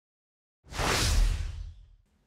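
An edited-in whoosh transition sound effect with a deep rumble underneath, starting about two-thirds of a second in and fading away over about a second.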